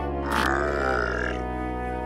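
A deep, sustained growl-like sound from a cartoon soundtrack, layered with music, with a brighter higher tone swelling from about a quarter second to just past a second in.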